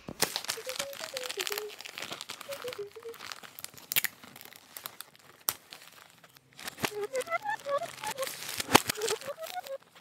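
Wrapping paper crinkling and rustling as a gift box is wrapped by hand, with several sharp crackles.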